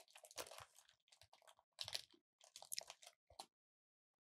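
Faint, irregular crackling and crunching close to a microphone, in three or four short clusters, stopping about three and a half seconds in.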